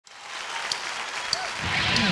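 Concert audience applauding as the sound fades in from silence, with the band's low notes starting to come in near the end.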